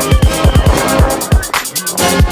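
Background music with a heavy beat: a quick pattern of deep, falling bass-drum hits under fast hi-hats.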